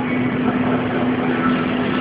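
A steady machine hum with an even rushing noise beneath it.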